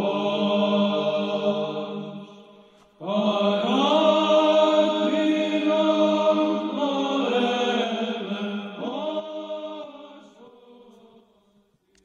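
Orthodox church chant: sustained sung lines over a steady held low note. One phrase dies away about three seconds in, a second starts at once and slowly fades out near the end.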